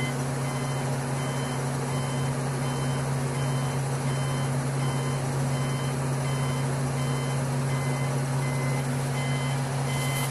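A crane's engine running steadily, heard from inside the operator's cab, with an electronic warning beeper sounding short beeps about one and a half times a second, fainter in the middle and clearer again near the end.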